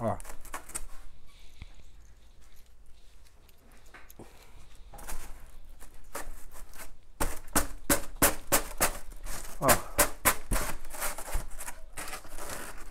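Expanded polystyrene (EPS) foam ceiling boards being handled and pressed into a metal drywall grid: a quiet start, then from about halfway a quick run of short squeaky, crackling scrapes of foam against foam and metal.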